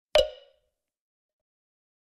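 A single short, pitched pop sound effect for an animated graphic, about a tenth of a second in, dying away within half a second.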